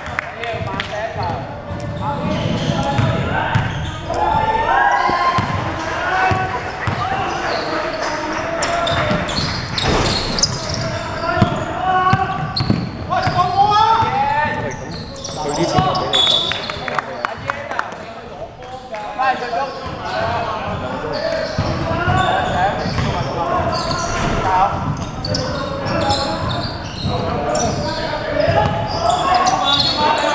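Basketball bouncing on the gym floor during play, with players' voices calling out across a large, echoing sports hall.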